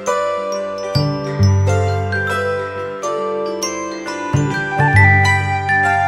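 Cheerful instrumental background music: a bright melody of short, quickly fading notes, with a low bass line coming in about a second in.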